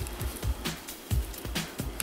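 Quiet background music with a low, pulsing bass, under light clicks and rustling as a fashion doll and its small earrings are handled.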